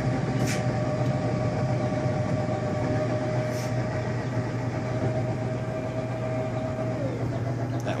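Drill motors of the homemade automatic egg turners running as they tilt the egg trays down, a steady whine that drops a little in pitch and cuts off about seven seconds in when a turner arm hits its limit switch. A steady low hum continues underneath.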